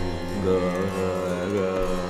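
Hindustani khyal singing in raga Darbari Kanada: a male voice holds a slowly wavering note, shadowed by harmonium over a steady tanpura drone.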